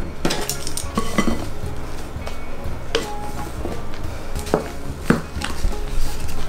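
Wooden spoon scraping and knocking against glass mixing bowls as whipped egg whites are scooped into pancake batter, with several separate sharp knocks.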